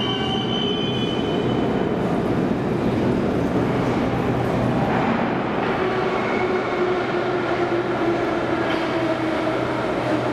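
Nomernoy 81-717/714 metro train coming into an underground station: a steady rail rumble with a whine that drifts slightly down in pitch as the train slows, and some high squeal-like tones fading out in the first couple of seconds.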